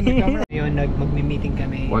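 A man's voice, cut off abruptly about half a second in, then a steady low hum of a car idling, heard from inside the cabin.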